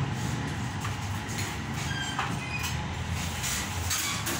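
Steady low mechanical hum of background machinery, with faint knocks and squeaks of handling as a computer monitor is put down and a CPU tower picked up.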